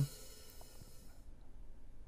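Open hi-hat sample, a Paiste 302 cymbal recording, ringing out and fading away, gone a little over a second in.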